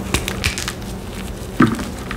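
A block of plain gym chalk crushed by gloved hands into turquoise dyed chalk powder: a run of dry crunches and crackles, the loudest and fullest crunch about one and a half seconds in.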